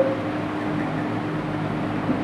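Steady low hum with a faint hiss of room noise.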